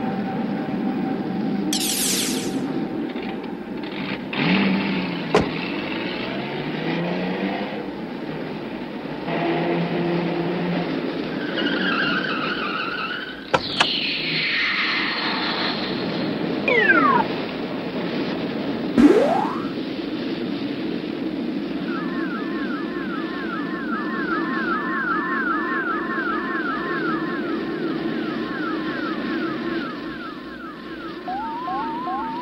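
Cartoon soundtrack of sound effects over a steady hum: high whistles, sharp clicks and tones sliding up and down in pitch, then from about two-thirds of the way through a fast warbling tone repeating two or three times a second.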